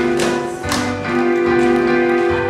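Children's tap shoes striking a stage floor in several sharp, uneven taps over steady backing music.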